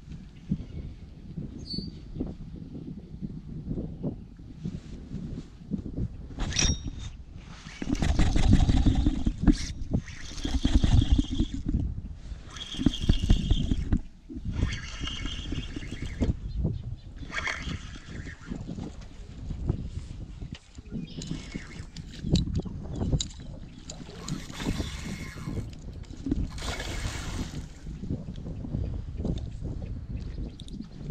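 Uneven gusts of wind buffeting the microphone, heaviest from about 8 to 14 seconds in, with a few sharp knocks from handling the fishing rod in the boat.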